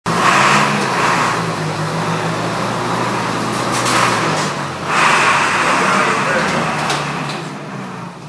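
Fire truck's engine running as the truck pulls out of the station, with a steady low drone and several loud noisy bursts: one at the start, one about four seconds in and a longer one after. It fades slightly near the end as the truck moves away.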